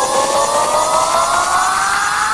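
Synth riser in a donk dance track: a stack of tones gliding slowly and steadily upward in pitch with the drums and bass dropped out, the build-up of a breakdown.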